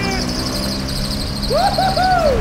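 Small scooter engine running steadily as the scooter rides along; about one and a half seconds in, a man starts whooping "woehoe" in long rising-and-falling hoots.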